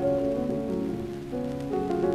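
Orchestra playing held, slowly changing chords on a 1937 78 rpm shellac record, with the steady hiss and faint crackle of the record's surface noise underneath.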